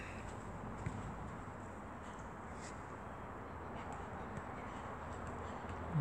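Faint, steady outdoor background noise with a brief click a little under a second in and a few fainter ticks.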